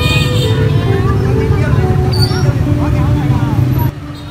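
Busy market street: a steady low rumble of motorbike traffic with people talking. A cat gives a short meow right at the start.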